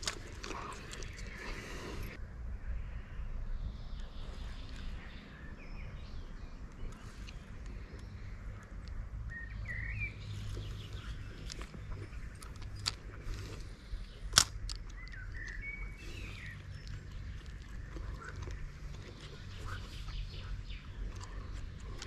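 Quiet open-air riverbank ambience with a steady low rumble, a few brief bird chirps, scattered small clicks and one sharp click about two-thirds of the way through.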